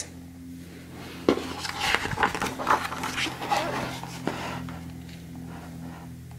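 A page of a hardcover picture book being turned: paper rustling with a few light taps and knocks from about one to four and a half seconds in, over a steady low hum.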